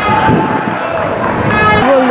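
A man's voice in excited football commentary, with held, drawn-out calls at the start and again near the end, over a steady noisy background.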